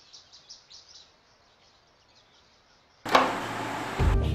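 Faint bird chirps for about the first second, then near silence. About three seconds in comes a sudden, loud whoosh sound effect that starts sharply and holds on.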